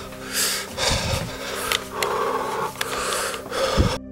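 A man breathing hard in uneven, noisy breaths close to the microphone, agitated and frightened, with rustling and a few light clicks from handling a cordless phone.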